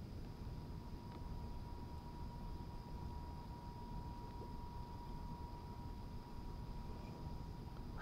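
Quiet outdoor background: a low, steady rumble, with a faint, thin, steady high tone held for nearly the whole stretch, stopping at the end.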